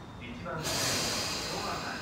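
Tobu 9000 series commuter train releasing compressed air with a loud hiss that starts suddenly about half a second in and fades over the next second and a half, as it readies to depart. A voice is heard briefly.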